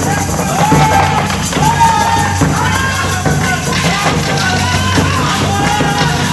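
Loud stage music: a high melody in short, repeated arching phrases over a steady low drone.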